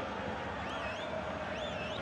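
Steady stadium crowd noise from a football match, with a high warbling whistle that wavers up and down twice.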